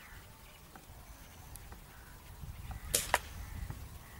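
Diana 34 Classic spring-piston air rifle firing: two sharp cracks about a fifth of a second apart, about three seconds in, over a faint low rumble of wind.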